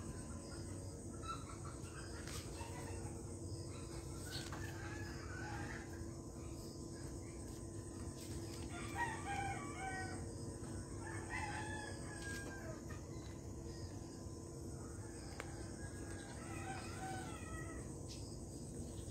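A rooster crowing several times, faint against a steady low hum.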